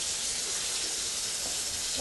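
Water running steadily from a kitchen faucet into the sink while hands are rinsed under the stream.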